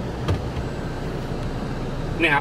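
Toyota Alphard idling, a steady low hum heard inside the cabin, with a faint click about a quarter of a second in.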